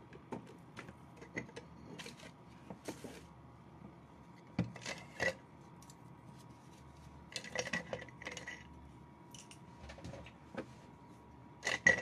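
Scattered light clicks and clinks of paintbrushes and small craft tools being rummaged through and picked up, with a couple of louder knocks about five seconds in and a short run of ringing clinks around eight seconds in.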